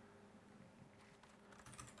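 Near silence with faint typing on a computer keyboard, a few keystrokes near the end.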